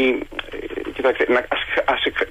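A man speaking Greek, with the thin, narrow sound of a telephone line.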